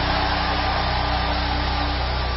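A steady low hum with a few held low tones and a hiss over it, unchanging.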